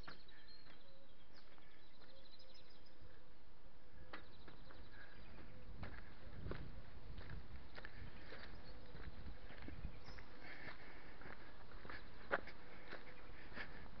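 Quiet outdoor ambience: a steady faint hiss with faint bird calls and a few soft, scattered footsteps on a dirt path.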